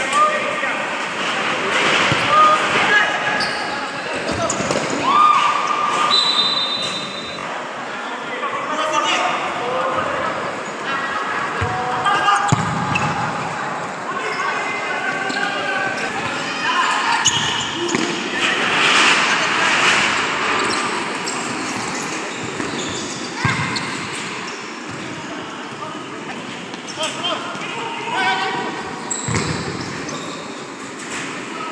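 Futsal ball being kicked and bouncing on a hard indoor court, a scattering of sharp thuds, with players shouting in an echoing sports hall.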